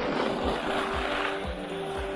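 Background music with a steady beat, overlaid during the first second and a half by a loud rush of noise: skis carving and scraping over packed snow in a turn.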